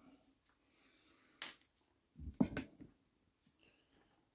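Faint handling noises from work on a wired bonsai: a single sharp click about a second and a half in, then a short cluster of knocks and rustles a little past two seconds.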